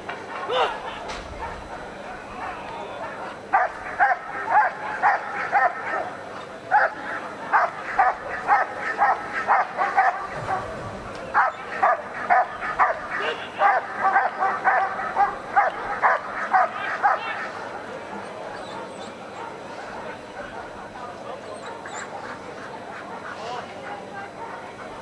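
German Shepherd barking at a motionless helper, guarding him after releasing the bite sleeve. The barks come at about three a second in three runs with short breaks, starting a few seconds in and stopping well before the end.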